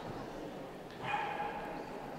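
A dog giving a single high whine about a second in, one held note lasting under a second, over steady background noise.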